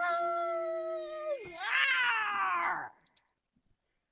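A voice holds a steady hummed note, then breaks about a second and a half in into a louder, high, meow-like wail that rises and then falls away. It stops abruptly about three seconds in.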